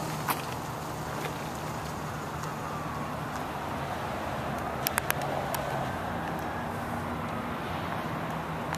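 Steady road traffic noise with a low hum, and a faint whine that rises and falls in the middle as a vehicle goes by. A few sharp clicks come about five seconds in.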